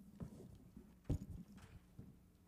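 Handling noise at a lectern: a few irregular soft knocks and one louder, deeper thump about a second in, as a laptop and its projector cable are being set up. A faint steady low hum runs underneath.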